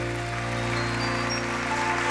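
Studio entrance music holding one long chord, which stops near the end.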